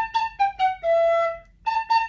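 Tin whistle playing a short melody whose notes step downward to a longer held low note. It breaks off briefly about one and a half seconds in, then starts the same phrase again.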